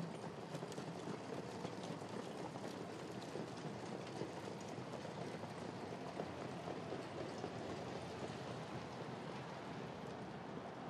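Faint, steady outdoor track ambience with a hiss-like background and faint scattered hoofbeats of a harness horse jogging a sulky on the dirt track.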